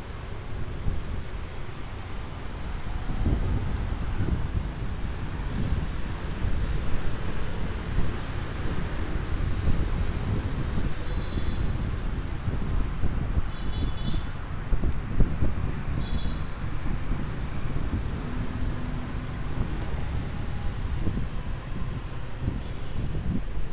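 Wind buffeting the microphone in uneven gusts, over a steady wash of road traffic. Three short high-pitched beeps come about halfway through.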